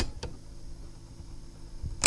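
Steady low hum of room ambience, with two sharp clicks in the first quarter second.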